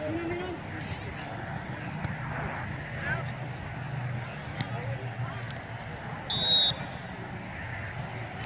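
A referee's whistle gives one short, shrill blast about six seconds in, the loudest sound, over a steady background of voices from the sideline and field.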